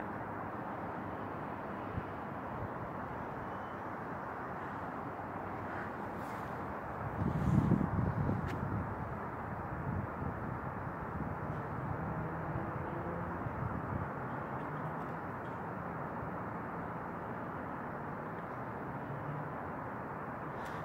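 Steady outdoor background noise: a low, even rumble, with a louder low swell lasting about a second and a half partway through.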